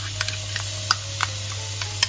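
Frying pan of bacon, onion and garlic crackling with irregular light ticks and pops as crème fraîche is spooned into it.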